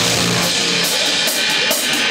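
Live rock band with a full drum kit, loud: the low bass notes drop out and the drums and cymbals carry on in a run of sharp hits with cymbal wash, the song winding down to its close.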